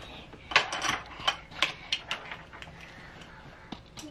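A quick run of sharp clicks and clatters from small plastic toys handled in a toddler's hands, dying down after about two seconds, with one more click near the end.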